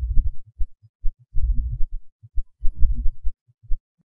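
Deep, uneven low thuds from the video's background sound bed, stopping shortly before the end.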